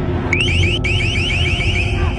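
Electronic siren tone of rapid rising whoops, about seven a second, starting a moment in and briefly breaking off before going on, over a steady low rumble.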